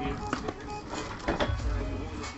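Background music playing steadily, with a few short sharp handling sounds.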